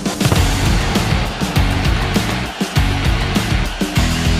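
Loud music with a heavy, driving beat from a sports broadcast's animated break bumper, cutting in at full volume at the start.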